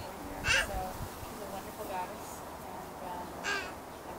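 A crow cawing twice, single short caws about three seconds apart, over faint background voices.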